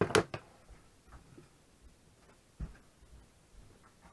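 Handling knocks on a wooden workbench as an axe is picked up: two sharp knocks right at the start, faint clicks, then a low thump a little over two and a half seconds in.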